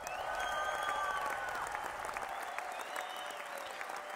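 Crowd applause: steady dense clapping with a few whistles gliding over it.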